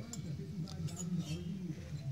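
Faint clicks and light clinks of chainsaw cylinders being handled and set down on a cluttered workbench, over a steady low hum.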